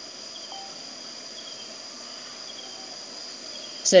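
A steady high-pitched trill over faint background hiss, unbroken through a pause in the talk.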